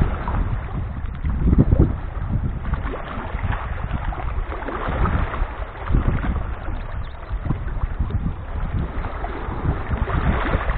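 Small sea waves washing and lapping over rocks and boulders at the water's edge, swelling and fading in irregular surges, with wind buffeting the microphone.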